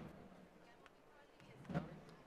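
Faint murmur of a street crowd, with one short call from a man's voice near the end.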